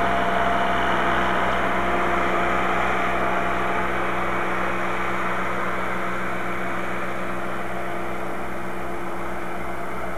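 Farm tractor engine running steadily as the tractor drives off through deep snow, slowly fading as it moves away.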